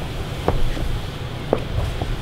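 Two soft thumps about a second apart over a steady low rumble, from hands and bodies landing on a carpeted gym floor during a push-up walk-down drill.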